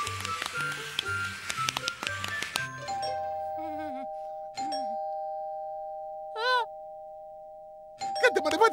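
Background music stops, then a two-tone ding-dong doorbell chime rings, its tones slowly fading, and is rung a second time about halfway through. Near the end a brief warbling voice cuts in.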